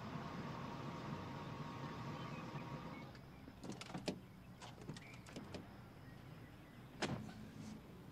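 A parked car's engine running steadily and then cut off about three seconds in. Car doors are then opened and shut, with several sharp latch clicks and a heavier door thunk about seven seconds in.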